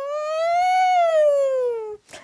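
A woman's voice holding one long high hum that rises slowly in pitch and then falls before it stops.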